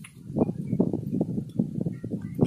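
Steel spoon stirring a thick tomato and onion masala in an aluminium pot, giving a run of soft, uneven knocks and scrapes, about four or five a second.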